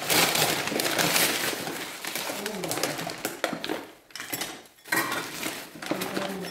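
Plastic bin bag and paper bag rustling and crinkling as they are pulled open and rummaged through, with glasses clinking among them.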